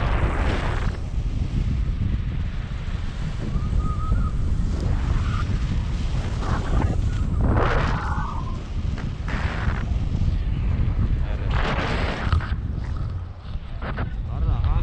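Wind rushing over the camera's microphone in flight on a tandem paraglider: a steady low rumble, with louder gusts of hiss about halfway through and again near the end.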